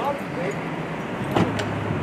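Steady noise around an LAPD patrol SUV with its engine running, broken by two sharp clicks about a second and a half in, with low voices.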